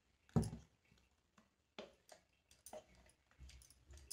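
A metal spoon knocking once against a stainless steel mixer-grinder jar, then a few faint clicks as it scrapes thick batter out of the jar into a glass bowl.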